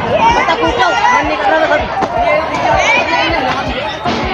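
Many children's voices chattering and calling out at once, with low thuds of footsteps on wooden stairs.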